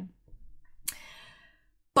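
A woman's sigh: a short breathy exhale about a second in that fades away, then a sharp mouth click near the end as she starts to speak again.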